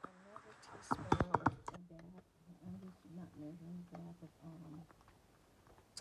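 Metal fork stirring and scraping a gritty brown-sugar and margarine cookie mixture in a bowl, with a quick run of crunchy scrapes about a second in and softer strokes after. The crunchy sound means the mixture is still dry and grainy, not yet creamed smooth. A faint low humming sound comes and goes through the middle.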